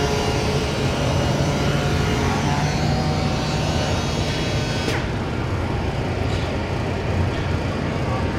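Robot-held rectangular 3x4 orbital sander with a foam abrasive pad sanding an MDF cabinet-door panel, a steady hum and rush with the dust-extraction vacuum running. About five seconds in there is a single click and the noise drops slightly as the sander leaves the panel.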